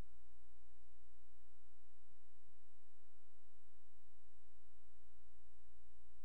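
Steady electrical hum in the sound system: a low drone with a fainter steady tone above it, unchanging throughout.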